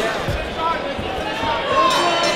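Live ringside sound of a boxing bout: voices calling out over the hall, with two dull thumps, one early and one about a second in, from the boxers in the ring.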